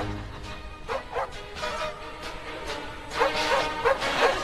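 A dog yapping in short barks, three in the first second or so and three more in the last second, over the film's orchestral score.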